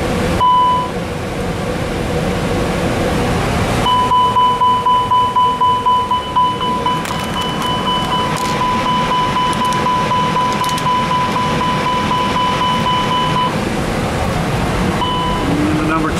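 A300-600 cockpit fire-warning alert set off by an engine 1 fire-detection test. It gives one short steady tone about half a second in, then a continuous tone of about nine seconds from about four seconds in, pulsing in loudness at first, and one more short tone near the end. A steady ventilation hum runs beneath.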